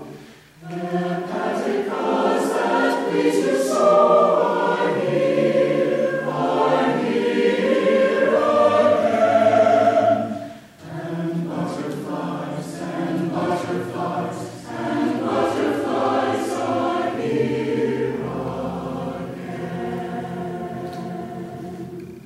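Mixed choir of men's and women's voices singing a sustained choral piece in long phrases. It breaks briefly just after the start and again about halfway through, swells loudest before that middle break, and grows softer toward the end.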